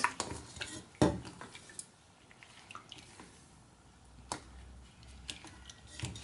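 Raw prawns stirred by a gloved hand in lemon water in a stainless steel bowl, with soft wet sloshing and dripping, being rinsed after deveining. Two sharp knocks, the loudest about a second in and another after four seconds.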